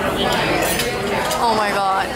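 Metal cutlery clinking against plates and dishes, a few light clinks in the first second, with restaurant voices in the background.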